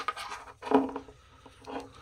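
RJ45 Ethernet cable plug being pressed into the jack of a USB Ethernet adapter: one sharp click right at the start, then faint rubbing and handling of the plastic plug and adapter housing.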